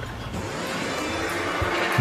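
Steady machinery noise, with a faint held hum coming in about halfway through.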